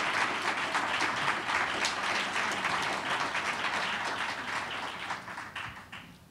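Audience applauding, a steady patter of many hands clapping that fades away over the last second.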